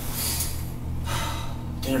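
A man's two loud, breathy exhales, one after the other, over a steady low hum.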